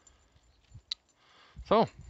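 A Sixleaf SL-12 folding knife being closed: one sharp click about a second in as the blade snaps shut into the handle.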